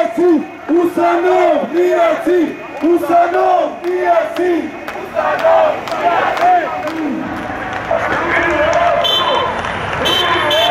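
A crowd of marchers chanting in loud, rhythmic shouts, about three a second. About seven seconds in, this gives way to a looser crowd din of many voices.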